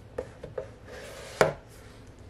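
Two light taps, a soft rustle of paper, then one sharp knock about a second and a half in: a printed album book and its card packaging being handled and set down on a tabletop.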